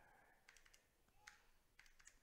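Near silence with a few faint clicks of calculator buttons being pressed as numbers are keyed in.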